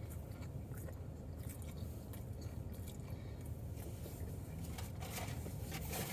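Quiet chewing of a mouthful of flaky pastel de nata (Portuguese custard tart), with faint, scattered crackles of the pastry shell, over a low steady hum.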